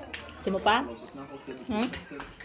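Light clinks of cutlery and dishes at a meal, with short bits of voice.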